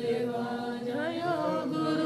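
Several voices singing a Vaishnava devotional song together, the melody gliding up and down without a break.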